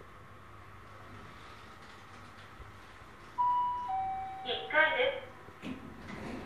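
A Fujitec XJ-series rope elevator car travelling with a faint steady hum. About three and a half seconds in, its two-note arrival chime sounds, a higher tone falling to a lower one, and the car's recorded voice announcement follows.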